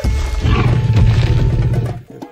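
Cartoon Tyrannosaurus rex roaring: a loud, deep roar over background music. It is strongest from about half a second in and drops away just before the end.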